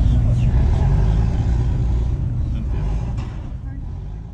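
Low, steady engine rumble of an idling motor, with people's voices early on, easing down toward the end.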